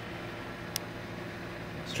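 Steady mechanical room hum from lab ventilation and equipment, with one sharp click a little under a second in.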